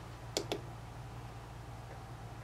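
Two quick plastic clicks, about a tenth of a second apart, from the controls of a handheld DSO Shell oscilloscope as its timebase is stepped, over a steady low hum.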